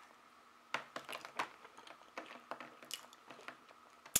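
Faint, close mouth noises of a person chewing a sugar-coated marshmallow Peep: irregular wet clicks and smacks starting about a second in.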